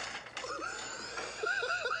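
A high, squeaky voice whose pitch rises and falls in short arcs.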